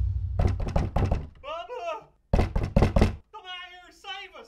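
Two short runs of knocking, each followed by a brief voice-like sound, with a deep boom dying away at the start.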